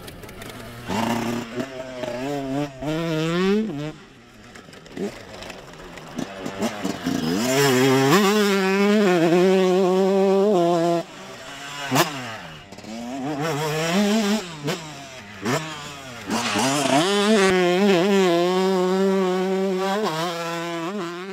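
Kawasaki KX85 two-stroke motocross engine revving up and down repeatedly, with two long stretches held at high revs, one around the middle and one near the end.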